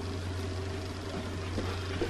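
A steady low hum of room background noise, with no distinct event standing out.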